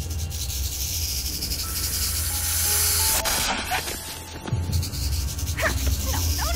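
Cartoon action sound effects: a loud hissing of snakes over a low rumble, with a few held music notes in the middle. The hiss drops out briefly after the midpoint, and some short sliding sounds come near the end.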